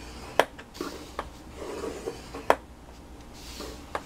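Scoring stylus drawn along the grooves of a scoring board through cardstock, a soft rubbing scrape broken by two sharp clicks, about half a second and two and a half seconds in, and a few lighter ticks.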